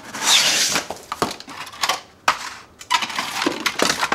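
Cardboard shipping carton and corrugated paper packing being pulled apart by hand: a loud scraping rustle near the start, then short crackling scrapes and several sharp snaps of cardboard.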